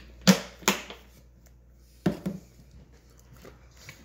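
Sharp clicks and knocks of kitchen equipment being handled around a stainless steel mixing bowl: two loud knocks within the first second, another about two seconds in, and a few faint ticks near the end.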